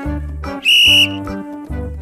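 A single short blast of a sports whistle, about half a second in, as one steady high note: the signal for the pupils to start copying the pose. Upbeat background music with a pulsing beat runs under it.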